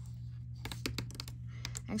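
Sheets of patterned cardstock being handled and slid on a cutting mat: a run of quick, irregular clicks and taps starting about half a second in, over a steady low hum.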